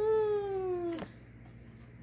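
A cat meowing once: one long call, falling slightly in pitch, about a second long.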